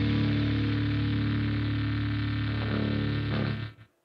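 Distorted electric guitar holding one chord that rings steadily, then stops abruptly near the end.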